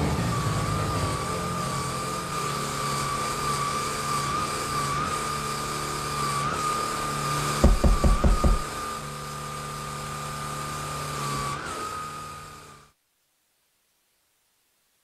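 Vacuum cleaner motor sound effect: a steady whine over a low hum, broken by a quick run of about five loud thumps just past the middle. It cuts off suddenly near the end.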